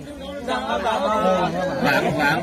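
People talking over one another in a crowd: overlapping chatter, with one voice standing out.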